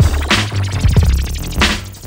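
Music with deep bass and a steady beat, a sharp hit coming about every second and a bit.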